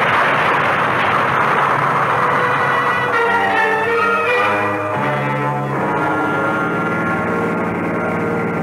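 A loud rushing noise, the tail of the explosion-and-fire sound effect, for the first three seconds or so, giving way to a dramatic orchestral music bridge of held brass chords that shift a few times.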